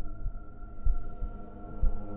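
Heartbeat sound effect, slow double thumps about once a second, over a sustained eerie low drone.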